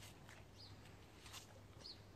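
Near silence, with a few faint short bird chirps and a few faint clicks.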